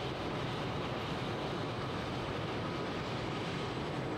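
Steady, unbroken vehicle engine noise.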